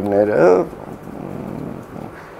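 A man's voice draws out a short hesitant vowel for about half a second, then pauses. Only faint room noise follows.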